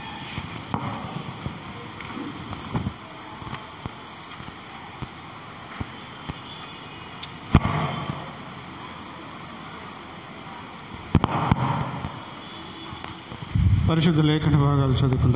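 Steady room noise in a hall, broken by scattered short clicks and knocks, with two louder sharp knocks about halfway through and at about eleven seconds.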